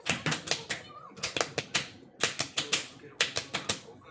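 Rapid run of sharp hand claps, about four or five a second, with short breaks about two and three seconds in.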